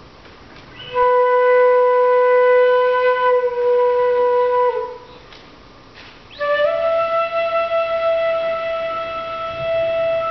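Shinobue (Japanese bamboo transverse flute) playing two long held notes: the first begins about a second in and is held nearly four seconds, dipping slightly in pitch as it ends. After a short pause, a higher note slides up into place and is held.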